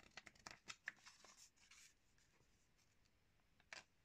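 Glossy magazine pages being turned by hand, faint: a run of paper rustles and flicks over the first two seconds, then a single sharper flick just before the end.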